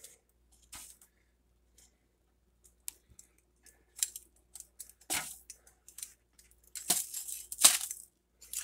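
Scattered short handling noises, light knocks, scrapes and rustles, as the camera is moved about over a kitchen counter; the loudest come near the end.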